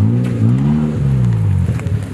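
Engine of an Afghan-built sports car, a Toyota unit, revved twice: the pitch climbs and falls back once briefly, then again in a longer swell.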